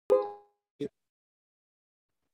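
A single plucked banjo note, struck sharply and dying away within half a second, followed by a brief soft click.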